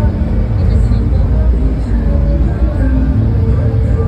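Loud street procession din: bass-heavy amplified music mixed with crowd voices.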